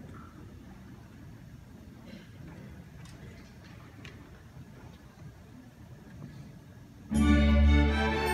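Quiet room noise with a few soft clicks, then about seven seconds in a school ensemble starts its piece together on a loud held chord.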